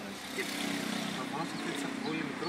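A motor vehicle passing close by, its engine a steady hum that comes up about half a second in, with some talk over it.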